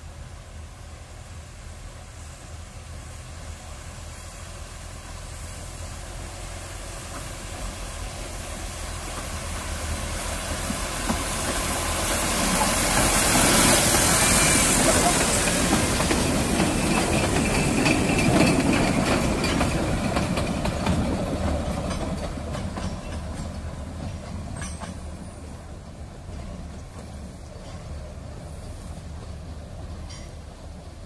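A 2 ft gauge diesel locomotive hauling open passenger carriages approaches, passes close by, and moves away. The sound builds steadily, is loudest from about 13 to 19 seconds in with a hiss at its peak, then fades, with a few sharp clicks as it recedes.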